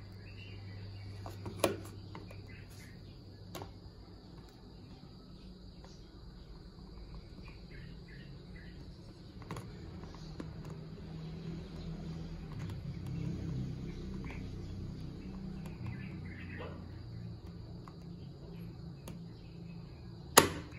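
Faint clicks and scrapes of steel needle-nose pliers working inside a plastic mouse-trap clamp, with one sharper click about two seconds in and a few lighter ones later. A steady low hum runs underneath.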